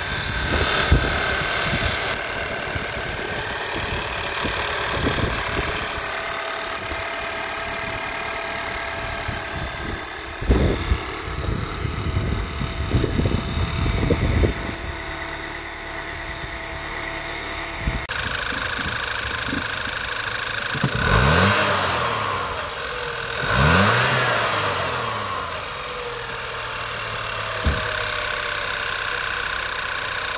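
Audi 1.8 TFSI turbocharged four-cylinder direct-injection engine idling with the bonnet open, with a loud clicking from the fuel injectors and high-pressure pump that is normal for direct injection. It is revved briefly twice about two-thirds of the way through. The run is a check that the idle holds steady with no vacuum leak at the newly fitted oil catch can hoses.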